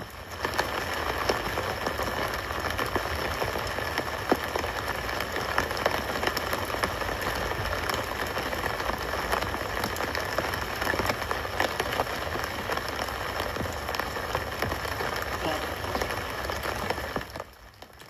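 Steady rain falling on a city street, heard from a live stream playing on the device, a dense hiss full of small drop ticks. It comes up suddenly just after the start and drops away shortly before the end.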